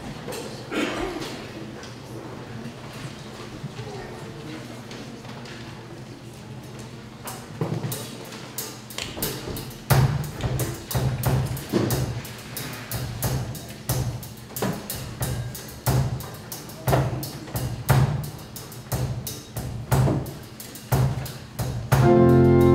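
Low rustle and murmur of a standing congregation, then from about eight seconds in a drum beating a steady pulse, roughly two strokes a second, as the introduction to the closing hymn.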